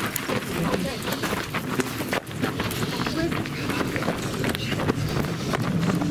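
Footsteps of people running over gravel and rubble, with many short crunches and knocks, and voices breaking in now and then.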